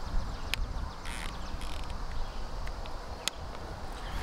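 Two sharp clicks a few seconds apart and light rustling as a bolt-action rifle is handled on a shooting bench after its scope's windage turret is dialled, over a low steady rumble.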